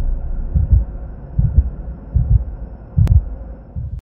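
Heartbeat-style sound effect of a logo intro: low double thumps repeating a little faster than once a second over a faint steady hum, with one sharp click about three seconds in.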